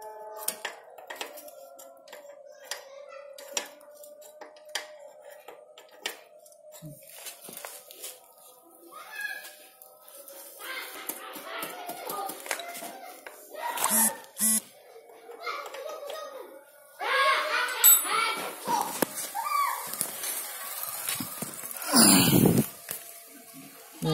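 Scattered light metallic clicks and taps of a wrench working the rear chain adjuster bolt of a Yamaha Jupiter Z1 motorcycle, during chain-tension adjustment. Indistinct background voices come in about halfway, and a loud handling rush is heard near the end.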